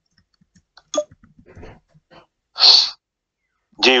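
A click about a second in, then a short, sharp breathy burst close to a phone microphone near the end, followed by a man saying 'ji'.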